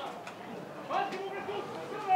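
Faint, distant voices calling on a football pitch, with one short rising shout about a second in.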